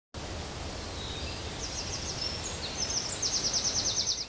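Outdoor countryside ambience: a steady background hiss with high-pitched chirps. The chirps start about a second in and turn into a fast, evenly pulsed trill near the end.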